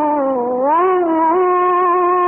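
A male Quran reciter's voice in melodic tajwid recitation, drawing out one long note. The pitch dips and climbs back in the first second, then holds steady and high. It is heard through an old live recording with a dull top end.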